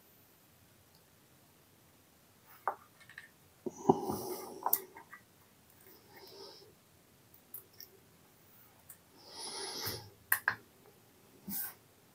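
Quiet, scattered clicks and rustling from handling spring-loaded test-lead hook clips as they are clipped onto a small electrolytic capacitor's legs, with a few sharper clicks near the end.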